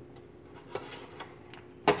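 A few light clicks and taps as a pumice stone and a rubber-gloved hand handle a metal stove drip pan, with one sharper click near the end.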